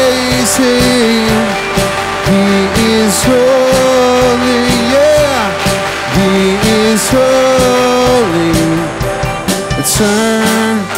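Live worship band playing an instrumental passage of a rock-style song: a melody of held notes stepping up and down over guitars and drums.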